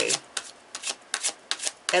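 A tarot deck being shuffled by hand: an irregular run of light clicks as the cards slide and drop between the hands.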